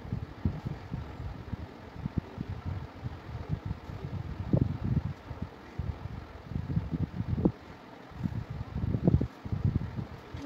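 Low, irregular rumbling with soft thumps on the microphone, with no clear tone or rhythm.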